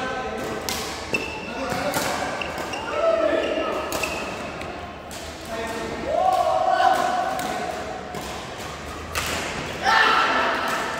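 Badminton rally: several sharp racket-on-shuttlecock hits about a second apart, with short high squeaks from shoes on the sports-hall floor.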